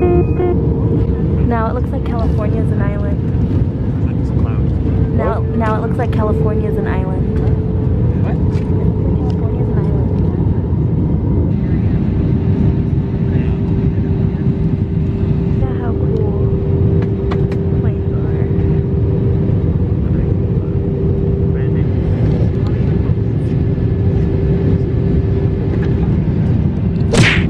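Jet airliner cabin noise in flight: a steady low rush with a constant hum, faint voices in places.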